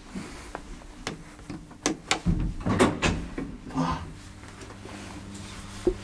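KONE hydraulic elevator car: a series of clicks and knocks from its door and controls, one with a low thump about two seconds in. A steady low hum sets in about four seconds in.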